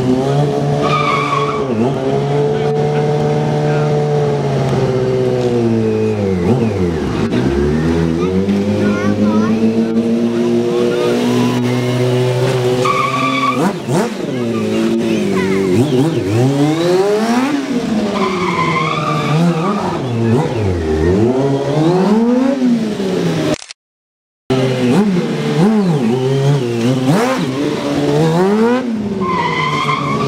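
Stunt sportbike engine revving hard over and over, its pitch swinging up and down with each throttle blip, with a few short bursts of tyre squeal from the rear tyre. The sound cuts out completely for about a second about two-thirds of the way through.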